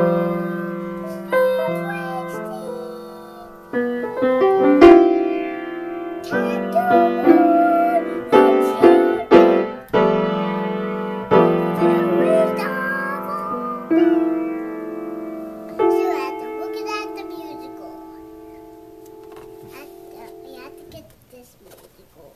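Upright piano played by a toddler: keys struck one after another and in clusters, each note ringing on, with a child's voice singing along in the middle stretch. The last notes fade out near the end.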